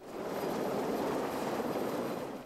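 Helicopter hovering in a dust cloud: a steady, even rush of rotor and engine noise.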